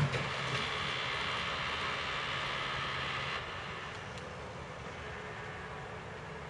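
Engine and hydraulics of a truck-mounted log-loading crane working, with a single knock at the start. Its higher whine and hum drop away about three and a half seconds in, leaving the engine running more quietly.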